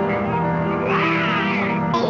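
Horror-film trailer score holding sustained chords, joined about a second in by an animal's high, wavering cry.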